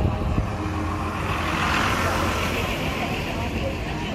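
Road traffic: a motor vehicle passing close by, its engine and tyre noise swelling to a peak about halfway through and then easing off.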